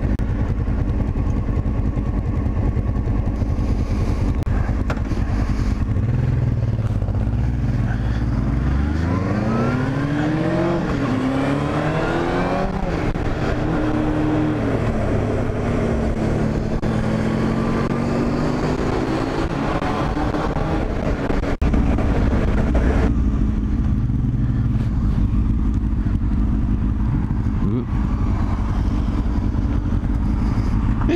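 Honda Hornet motorcycle engine running under the rider, its pitch rising repeatedly as it accelerates through the gears from about eight seconds in. It holds steady for a while and eases off at about twenty-three seconds as the bike slows.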